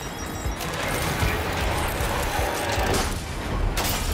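Animated show's soundtrack: a dense wash of mechanical action sound effects with a low rumble and a couple of sharp hits, over music.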